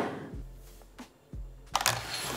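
An avalanche airbag gas cartridge set down on a tabletop, its knock dying away, then a couple of faint taps and a short rustle near the end, over faint background music.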